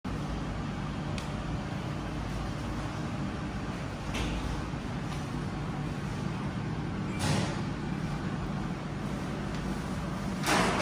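Steady low rumble of workshop background noise, with two brief swishing noises about four and seven seconds in.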